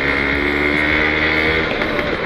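Motorcycle engine running at a steady cruising speed while riding, a continuous even drone with road and wind noise.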